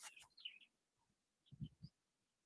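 Near silence, with a few faint, short bird chirps about half a second in.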